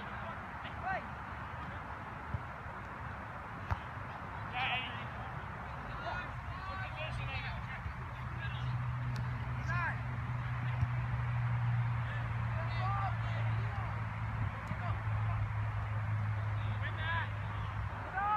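Distant shouts and calls from soccer players on the field, short and scattered, over a constant low rumble. A few sharp knocks stand out, and a steady low hum comes in about seven seconds in.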